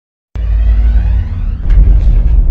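Logo-reveal sound effect: a deep, loud rumble that starts abruptly about a third of a second in, with a sharp hit shortly before the end.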